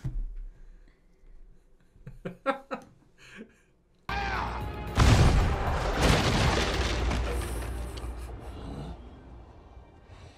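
Cannon fire and explosions in a TV drama soundtrack, with music: a sudden blast about four seconds in, then heavy booms about a second and two seconds later, rumbling and fading away over the next few seconds.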